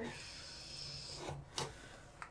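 A brush rubbing and swirling in wet face paint to mix it: a soft, steady scrubbing for about a second, then a short knock about one and a half seconds in.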